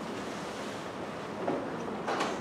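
Steady hissing room noise of a lecture hall with a faint low hum, and a soft knock about one and a half seconds in.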